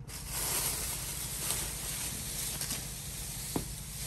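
Thin clear plastic sheeting rustling and crinkling as it is handled and pulled back by hand, with one light tap near the end.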